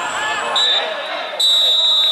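Referee's whistle blown twice: a short blast about half a second in, then a longer, louder blast about a second and a half in, over voices shouting on the pitch.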